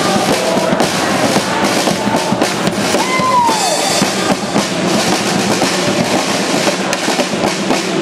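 Live carnival band playing, with drum kit and percussion driving the beat. About three seconds in, a short tone rises and falls over the music.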